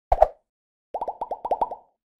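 Intro title sound effect: two quick pops right at the start, then, about a second in, a rapid run of about eight short plops, each rising in pitch.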